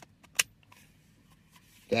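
A single sharp click as the plastic switch on an electric blanket's hand controller is pressed to turn it on, with a couple of faint handling ticks around it.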